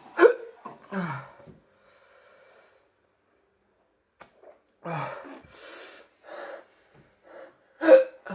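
A man gasping, groaning and breathing hard through his mouth, burning from the heat of a Trinidad Scorpion Butch T chilli he has eaten. A loud gasp right at the start and a falling groan about a second in, then a quiet spell, then a run of short ragged breaths with a hissing breath near the middle, and another loud gasp at the end.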